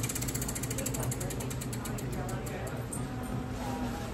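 Tabletop prize wheel spinning, its pegs clicking against the pointer in a fast run of clicks that slows until the wheel stops.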